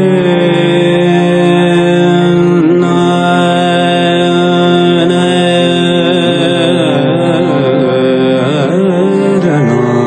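Live Marathi devotional song: a male voice holds long notes and sings wavering, ornamented runs over steady harmonium chords and a drone, the runs busiest in the last few seconds.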